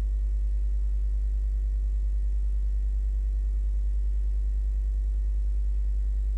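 Steady low electrical mains hum with a stack of evenly spaced overtones, unchanging throughout.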